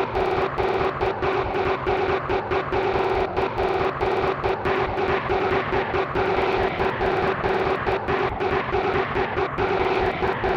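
Heavily distorted Sparta-style remix music: a looped sound sample stutters over a fast beat, and a droning tone is chopped on and off several times a second.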